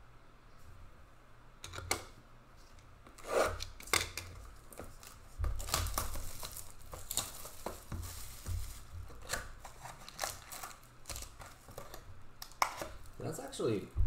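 Plastic card cases and plastic wrapping being handled on a table: a run of irregular clicks and knocks with rustling and crinkling between them, setting in about two seconds in.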